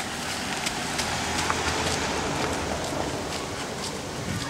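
A group of children walking past on a paved path: shuffling footsteps and small clicks over a steady outdoor din, with a low rumble swelling about a second in.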